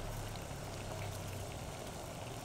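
Food cooking on a stove: a steady bubbling hiss flecked with small pops and crackles, over a low steady hum.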